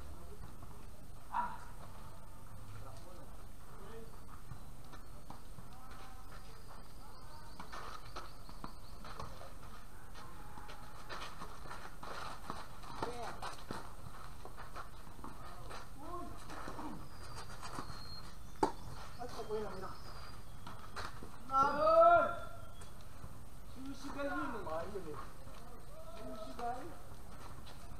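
Tennis players' voices calling out across an outdoor court, with the loudest call about 22 seconds in, over a steady background hiss. Two sharp single knocks of a tennis ball on racket or court, one about a second in and one about two-thirds of the way through.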